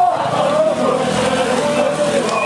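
A small motorbike or scooter engine running as it passes close by, under the shouting of a crowd.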